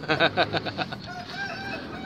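A rooster crowing: a quick run of short pulsed notes, then one long drawn-out held note from about a second in.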